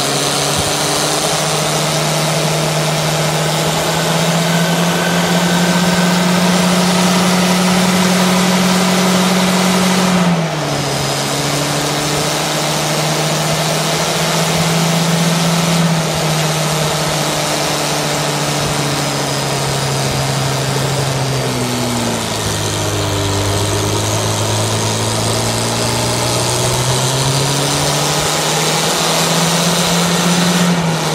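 VAZ 2106's four-cylinder engine held at high revs during a burnout, spinning the rear wheels in a cloud of tyre smoke. The revs hold steady, dip about a third of the way in and again about two-thirds through, then climb back.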